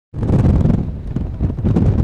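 Wind buffeting the camera microphone: a loud, gusting low rumble.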